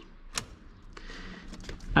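Ignition switch being turned by hand to the accessory position: one sharp click about half a second in, then a few faint clicks near the end.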